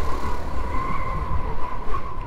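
Honda CT125 Trail's air-cooled single-cylinder engine running at a steady road speed under wind noise, a low rumble with a steady high tone over it.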